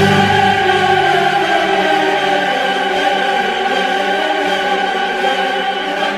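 Classical music: voices with orchestra holding one long sustained chord. The deep bass drops out about a second and a half in.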